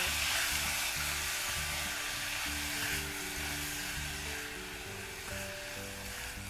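Chopped mixed vegetables sizzling in oil in a pressure cooker as they are stirred with a silicone spatula, the sizzle thinning out near the end. Background music with held notes and a steady bass pulse plays underneath.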